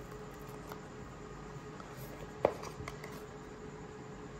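A paper sticker being peeled off a glossy sticker sheet, with faint ticks of paper handling and one sharp tap about two and a half seconds in.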